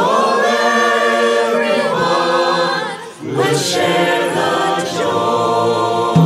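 Mixed choir of women's and men's voices singing sustained chords a cappella, a virtual choir of separately recorded home singers mixed together. The voices dip briefly about three seconds in, then come back in.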